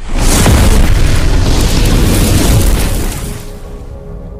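Cinematic explosion sound effect: a sudden loud boom that rumbles for about three seconds, then fades into a soft music drone of steady tones.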